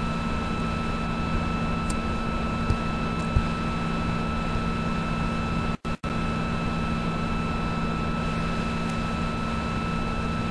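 Steady hum and hiss of background noise on the recording line, with several constant tones, a couple of faint clicks around three seconds in and two very short dropouts just before six seconds.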